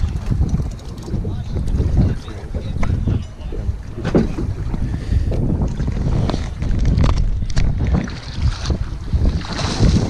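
Wind buffeting the microphone with a heavy, uneven low rumble, over water slapping against a small boat's hull, with a few short knocks.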